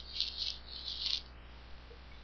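A short, high rattling or rustling noise in three quick bursts over about a second, over a faint low hum.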